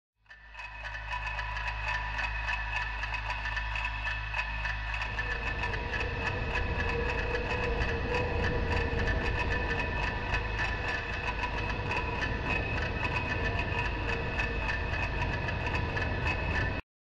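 Steady droning ambient soundtrack with a low hum, a few held high tones and a fine crackle, fading in at the start and thickening into a denser, noisier texture about five seconds in.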